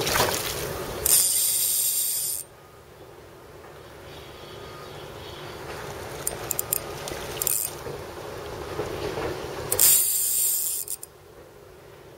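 Water splashing as a hooked largemouth bass thrashes at the surface while it is reeled in. There are loud bursts about a second in and again near the end, with quieter sloshing between.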